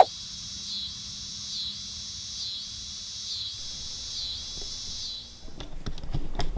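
Steady high-pitched chorus of insects in the grass and trees, swelling and dipping in a regular rhythm about once a second, which stops about five seconds in. A few sharp clicks follow near the end.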